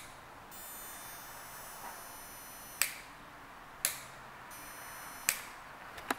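Three sharp, short clicks over quiet room tone, the first a little under halfway in and the last near the end. A faint, steady high whine comes and goes between them.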